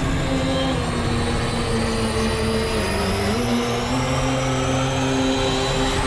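Cinematic trailer sound design: a dense rumbling roar under held low notes that step down in pitch about halfway through, with a faint high whine rising slowly toward a hit at the end.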